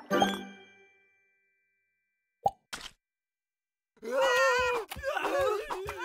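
Cartoon sound effects: a short plop about two and a half seconds in, with a smaller one just after, then from about four seconds a loud cartoon voice crying out with a wobbling pitch.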